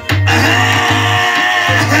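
Recorded music with a steady, repeating bass line, two to three bass notes a second, and sustained tones above it.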